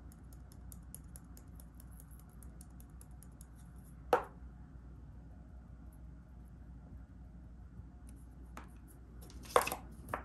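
Fine glitter being shaken from a small jar onto a glue-coated wooden board: a faint, rapid ticking of falling grains, broken by a single sharp knock about four seconds in. Near the end come a couple of louder knocks as a hand pats the glitter down onto the board.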